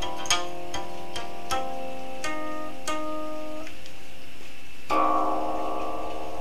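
Guqin (Chinese seven-string zither) being plucked in a slow improvisation: single ringing notes every half second or so, then a louder chord of several strings about five seconds in that rings on.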